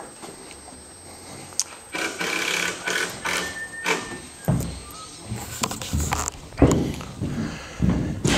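Footsteps on loose plywood sheets laid over deck joists: a scuffing stretch, then a few hollow thumps in the second half, the loudest about six and a half seconds in.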